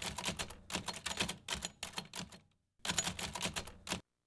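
Manual typewriter keys striking in quick succession, each typebar hitting the paper with a sharp clack. There is a short pause a little past halfway, then another run of strikes that cuts off suddenly at the end.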